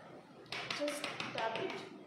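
A quick run of light taps starting about half a second in: a small chocolate-filled cup knocked against the tabletop to bring up the air bubbles, which would otherwise make the set chocolate likely to break.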